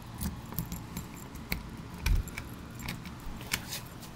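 A bunch of keys jingling, with small metallic clicks as a door lock is worked, and one dull thump about two seconds in.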